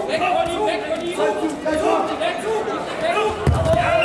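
Coaches and spectators shouting over one another in a sports hall, then a heavy thud about three and a half seconds in as the two wrestlers crash onto the mat in a throw.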